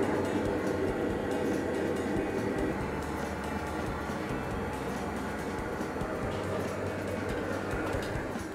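Steady roar of a commercial kitchen's gas burners and extraction hoods, with background music over it.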